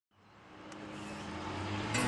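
A steady low hum and hiss fading in from silence and growing louder across the two seconds, with a few held low tones underneath.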